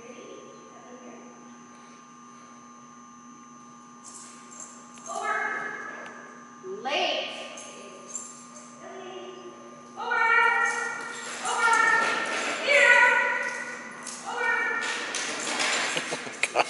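Indistinct, high-pitched voice calls in short, drawn-out phrases, starting about a quarter of the way in and coming thicker and louder in the last third, over a steady low hum.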